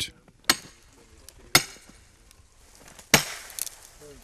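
Three sharp chopping blows of a tool into a birch trunk, about a second or a second and a half apart, each with a short ring.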